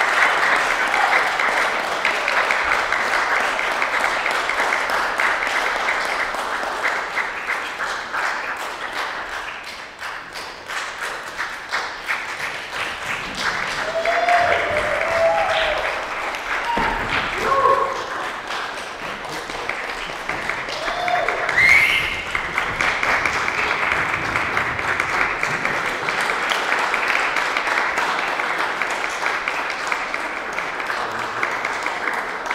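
Audience applauding after a vocal recital, with a few short voices calling out partway through. The applause thins about ten seconds in and swells again a little after twenty seconds.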